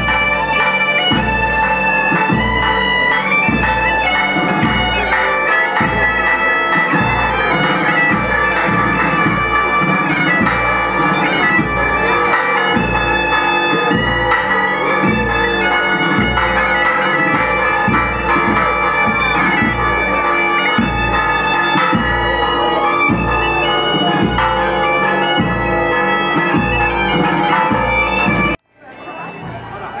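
Galician gaitas (bagpipes) playing a lively melody over their steady drone, with a drum keeping a regular beat about twice a second. The music cuts off suddenly near the end, leaving quieter background sound.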